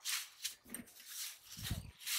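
A thin black plastic bag crinkling and rustling in short bursts as it is pulled open by hand. There is a brief, lower whine-like sound near the end.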